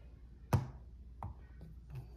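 Rough quartz rock knocking against a hard surface as it is handled on a light pad. One sharp knock comes about half a second in and a fainter one just after a second.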